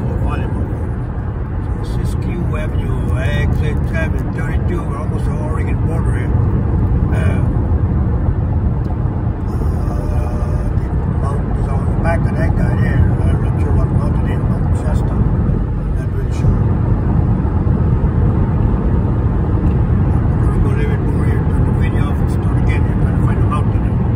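Steady low road and engine rumble inside a car's cabin at highway speed.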